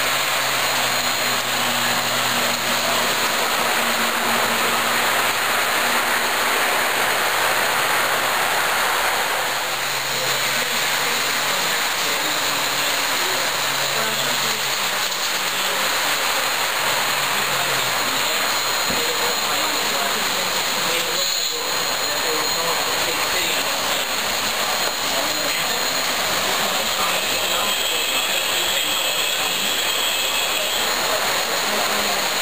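O scale model trains running on the layout, under a steady background of indistinct crowd chatter.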